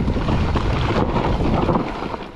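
Mountain bike rolling fast down a loose dirt and rock trail: tyre noise and the bike rattling over bumps, under heavy wind noise on the microphone.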